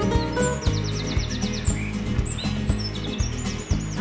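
Background music with a steady beat, with birds chirping high above it, including a fast trill about a second in and a run of short chirps near the end.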